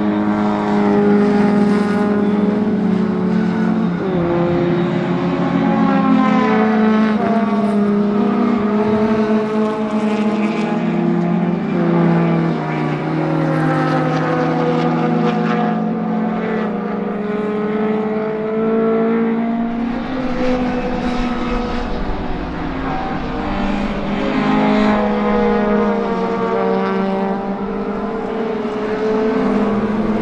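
Engines of several racing saloon and hatchback cars at speed on a circuit, their notes overlapping as cars follow one another. The pitches climb under acceleration and fall away repeatedly as the cars shift gears, brake and pass by.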